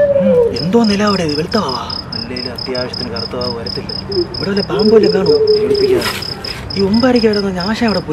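Cricket chirping in a steady, evenly pulsed high trill that starts about half a second in, under men's dialogue.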